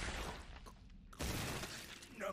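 Faint crashing, breaking fight sound effects from an anime episode played at low volume: a noisy crash that fades away, then a second sudden crash about a second in that also fades.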